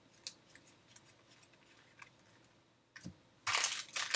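Faint clicks of trading cards slipping past one another in the hands. About three and a half seconds in, these give way to loud crinkling of a foil trading-card pack wrapper being opened.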